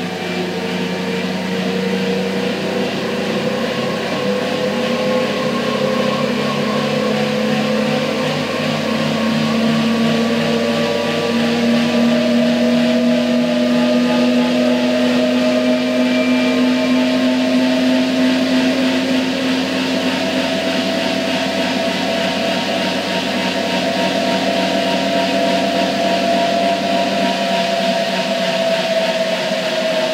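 A Schwalbe G-One Speed gravel tyre spinning on a bicycle rolling-resistance test machine, rolling against a motor-driven drum, with a steady whine. The whine rises slowly in pitch over the first half, then holds steady.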